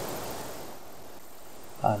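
Steady outdoor background hiss that eases a little under a second in, with a man's voice starting at the end.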